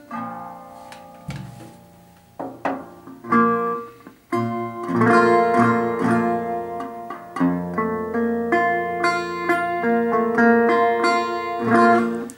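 National Style-O single-cone resonator guitar, metal-bodied, being fingerpicked on steel strings. A few ringing single notes come first with pauses between them, then about four seconds in a continuous fingerpicked passage begins.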